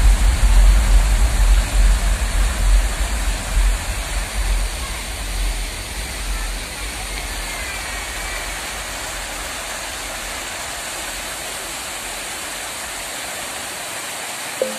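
Fountain jets and a curtain of falling water splashing into a pool: a steady rush of water. A low, uneven rumble fills the first half, then the sound settles into an even rush.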